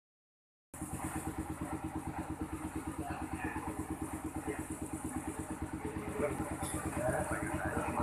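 A small engine idling steadily with a fast, even pulse, under faint voices of people nearby.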